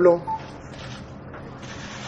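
Faint clicking of camera shutters over the steady background noise of a small room, after a man's voice trails off at the start.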